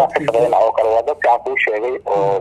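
Speech only: a person talking without pause.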